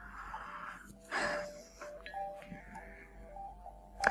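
Soft background music: a slow, bell-like melody of single held notes stepping up and down. A short burst of noise about a second in is the loudest moment.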